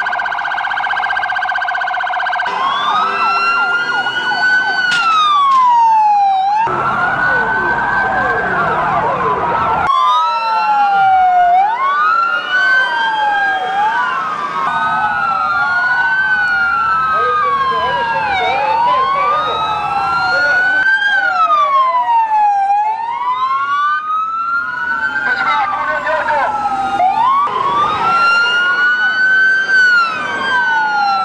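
Several police sirens wailing together, their slow rising and falling sweeps overlapping out of step, with a faster warbling siren in the first couple of seconds.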